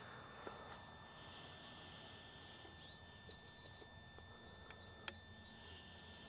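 Near silence: faint steady background hiss, with a few faint ticks and one short click about five seconds in.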